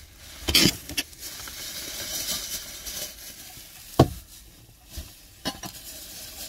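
Plastic bags and packaging rustling and crinkling as items are handled, with a louder rustle about half a second in and a sharp click about four seconds in.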